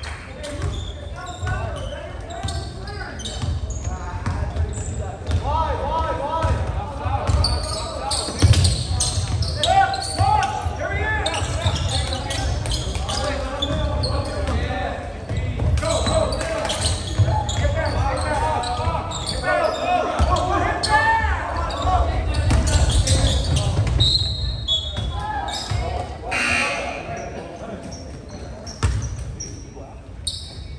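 Basketball being dribbled on a hardwood gym court, with indistinct shouting from players and spectators, echoing in the large gym. A brief high tone sounds once, late on.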